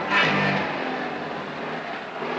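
A car driving close past on the road: engine and tyre noise swells to its loudest about a quarter second in, then runs on steadily. Under it a guitar music cue fades out about half a second in.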